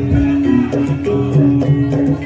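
Javanese gamelan playing lengger dance accompaniment: quick repeating patterns of struck, pitched metal notes over a sustained tone, with a deep low stroke just after the start.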